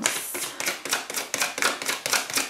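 A deck of tarot cards being shuffled in the hands: a rapid run of crisp card clicks, about eight to ten a second.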